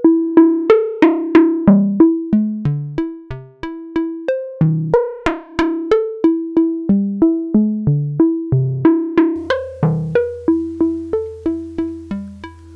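West-coast style synth patch in Reaktor Blocks Primes: the DWG oscillator playing a sequenced melody of short plucked notes through low pass gates, about three notes a second, while automated frequency modulation shifts each note's tone between bright and dull.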